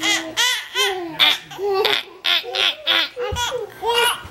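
A toddler laughing in a string of short, high-pitched bursts.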